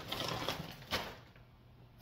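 Rustling from a crinkly white item being handled, with a sharp click about a second in, then quieter.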